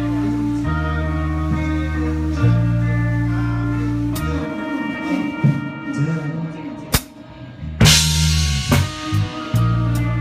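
Live band playing, with held bass notes and guitar chords. The sound thins out about four seconds in, leaving scattered drum hits and a cymbal crash about eight seconds in. The full band comes back in near the end.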